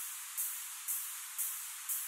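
Layered white-noise ambience in a beat: a thin, steady hiss with a brighter noise swish about twice a second that fades each time, a white-noise downlifter through shimmer reverb standing in for a ride cymbal.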